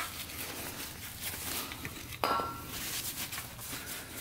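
Shop towel rubbing and handling around a motorcycle's greasy splined kickstart shaft, with a single short metallic clink about two seconds in.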